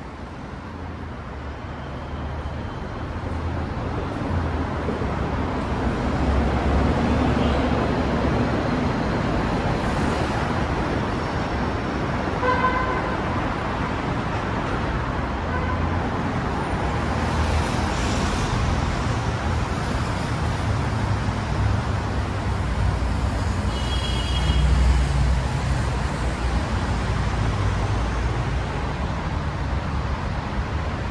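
City road traffic passing close by: steady tyre and engine noise that grows louder over the first few seconds. A short car-horn toot sounds about twelve seconds in, and a heavier vehicle's low rumble swells to the loudest point about twenty-five seconds in, with a brief high squeal.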